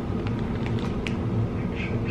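A few faint crinkles from a foil-lined potato-chip bag being tilted and handled, over a steady low background rumble.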